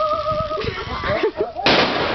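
Dry ice bomb in a plastic water bottle bursting with one sudden, loud bang about one and a half seconds in, blown apart by the pressure of carbon dioxide gas from the dry ice, followed by a rushing hiss as the gas and fog spray out.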